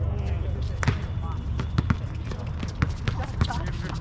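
A basketball bouncing on an outdoor court, with irregular sharp knocks of dribbling and play, the strongest about a second in, near two seconds and near three seconds. Players' voices call out in the background.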